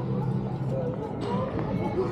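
Indistinct chatter of people talking in the street, with a few light clicks.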